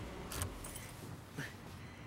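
Quiet car-cabin background with a low steady rumble and a few light clicks and soft jingles.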